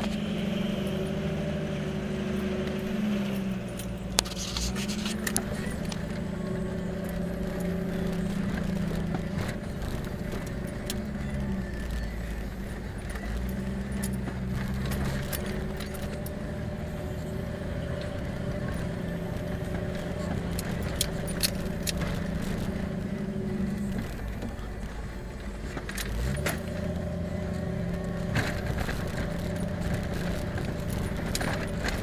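A 4x4's engine heard from inside the cab while driving a rough dirt road. Its pitch drops and climbs again several times as the throttle comes off and back on, with scattered clicks and rattles from the cab over the bumps.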